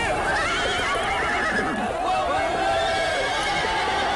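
Horses neighing, their hooves clopping, while a crowd of men shouts all at once.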